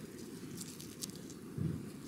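Faint rustling and crumbling of loose garden soil as a crocus bulb is pushed lightly into a planting hole by hand, with a few small clicks and a short soft low thump near the end.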